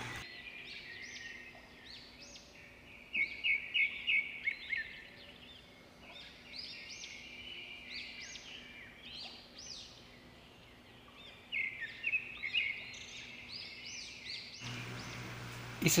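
Birds chirping in the background: many short, high chirps in quick runs, louder in two clusters, over a faint steady hum.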